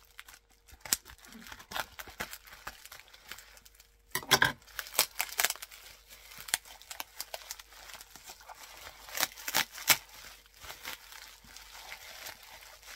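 Clear plastic wrapping crinkling and tearing as a parcel is cut and pulled open by hand: a run of sharp crackles, busiest about four seconds in and again near ten seconds.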